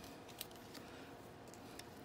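Faint handling clicks, three small ticks over low room tone, as multimeter test probes are worked into the contacts of a Hubbell 50 A plug.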